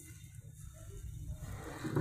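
Faint low rumble as a long paddle stirs thick, boiling sugarcane syrup in a large cast-iron pan, with the syrup being worked towards the paste stage for rapadura.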